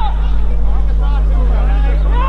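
Steady low wind rumble on the camera microphone, with scattered distant shouts and calls from players on the pitch.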